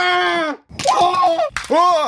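A person's voice letting out three short yells in quick succession, cries of pain with a rising and falling pitch and no clear words.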